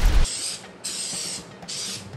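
The loud tail of an explosion sound effect cuts off about a quarter second in. Then an aerosol can of cooking spray hisses in several short bursts as a baking pan is greased.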